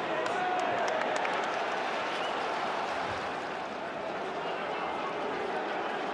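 Football stadium crowd: a steady din of many voices and cheering from the stands, with a few faint clicks in the first second.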